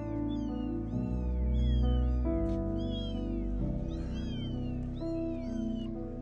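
Several newborn kittens mewing: many short, high-pitched, falling calls, several a second and overlapping, over background music.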